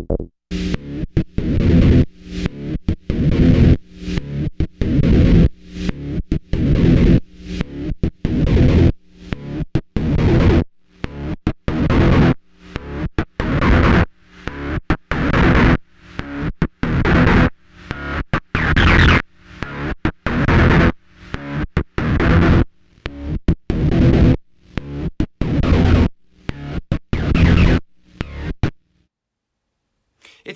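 Acid bassline from an x0xb0x TB-303 clone synthesizer, heavily distorted through the Eventide CrushStation overdrive plugin: a looping sequence of short, gritty notes, crazy nasty. It stops about a second before the end.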